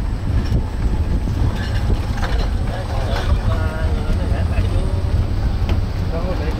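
Wind buffeting the microphone on a moving open-sided tourist cart, a steady low rumble, with voices talking faintly in the background.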